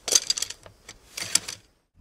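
Bamboo slips clicking and rattling as a finger riffles along the edge of a bound bundle, in two short bursts, the second about a second in. The sound cuts off just before the end.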